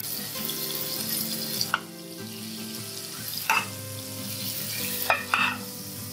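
Butter sizzling as it melts and bubbles on a hot nonstick grill pan. A few brief clicks sound over the steady hiss.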